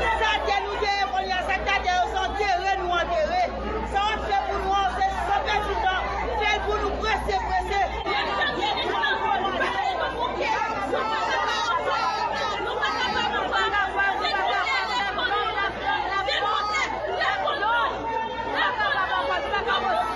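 A crowd of many voices talking and shouting over one another without a break.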